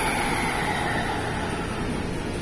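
JR West 223 Series and 225 Series electric train rolling slowly to a stop, with a low rumble of wheels on rail. Over it sits a whine of a few steady tones from the traction inverters and motors under braking, which fades out near the end.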